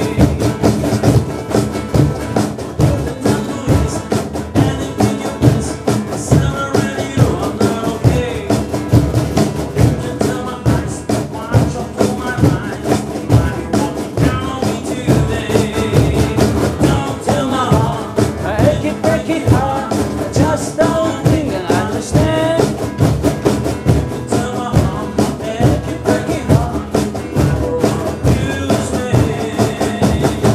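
Several cajons played together in a steady, busy beat, accompanied by an acoustic guitar.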